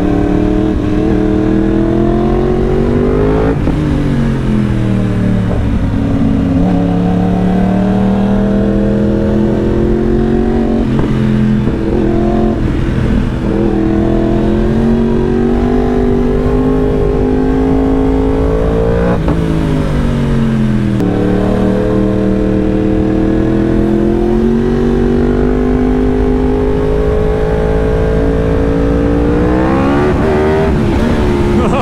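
Yamaha R1 crossplane inline-four sportbike engine under way, its note climbing and falling with the throttle and gear changes. There are sharp swings in pitch about four seconds in and again around nineteen seconds in.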